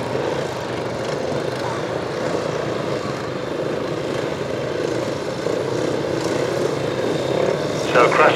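Racing motorcycle engines running at a distance in a steady, even drone as solo sand-racing bikes come up to the start line.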